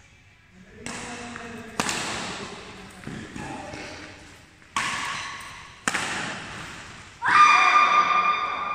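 Badminton rally in a large hall: three sharp racket-on-shuttlecock hits, about two, five and six seconds in, each echoing off the walls. Near the end comes a loud, held call from a player's voice.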